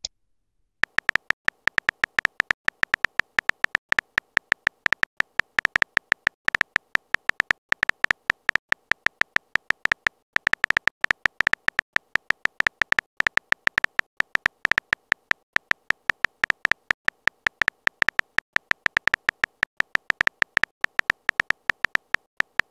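Phone keyboard typing sound effect: rapid, irregular clicky ticks, several a second, one for each letter typed. They start about a second in and pause briefly about ten seconds in.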